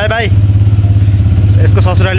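Motorcycle engine idling with a steady, evenly pulsing low beat.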